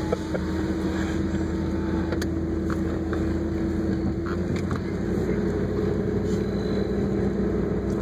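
Vehicle engine running steadily under load while driving slowly through soft sand, heard from inside the cab with low road and tyre rumble and a few light rattles. A little past halfway, the engine note steps up in pitch.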